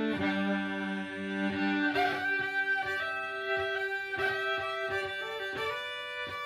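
Solo fiddle played with the bow: low notes held together as a drone for about the first two seconds, then a quicker run of short bowed notes higher up.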